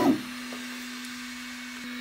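Ultimaker 2 3D printer running while its print head heats up before printing: a steady hiss of fan noise with a single low hum.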